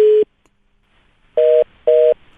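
Telephone call tones over the phone line: a steady tone cuts off about a quarter second in, and after a second of silence short two-note beeps start, about two a second. The beeping signals a call that is not getting through, as on a busy line.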